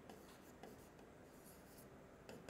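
Near silence, with faint scratching of a stylus writing on an interactive touchscreen board.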